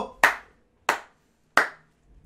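A person clapping their hands three times, sharp single claps about two-thirds of a second apart.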